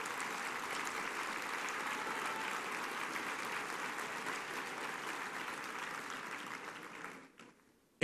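Audience applauding: steady, even clapping that fades away about seven seconds in.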